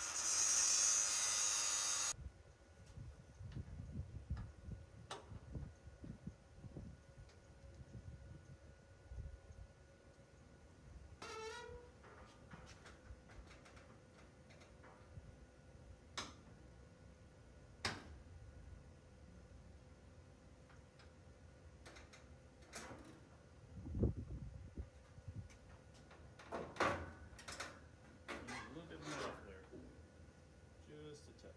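A brief loud hiss at the start, then scattered clicks and knocks with a dull thump about three-quarters of the way through, as the hood and the hood-latch parts are handled and pressed into place.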